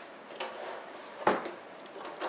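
The metal case of a TiVo Series 2 DVR knocking and clattering as it is handled and stood on end, with one loud knock a little past halfway and a few lighter ones around it.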